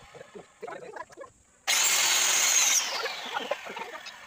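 Small handheld electric circular saw run for about a second with an abrupt start, then winding down with a falling whine. Light knocks of wood blocks being handled come before it.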